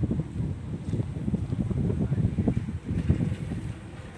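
Wind buffeting the microphone: an uneven, gusty low rumble.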